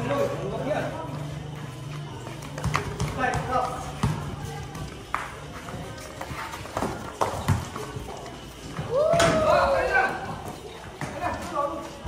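Basketball thudding now and then on a concrete court, amid players and onlookers shouting and talking; one loud shout rises and falls about nine seconds in.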